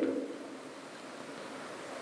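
Steady low hiss of room tone picked up by a lectern microphone, with the end of a man's word fading out at the very start.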